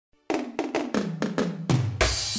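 Programmed drum fill opening the song: about seven tom hits in quick succession, each pitched lower than the last, starting a moment in after a brief silence.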